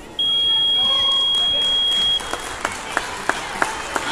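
An electronic match-timer buzzer sounds one steady high tone for about two seconds, the usual end-of-round signal in sparring. Scattered hand clapping follows.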